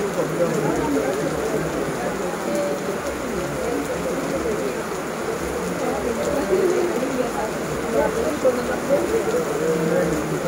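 Heavy rain falling steadily on paving and grass, a continuous even patter without a break.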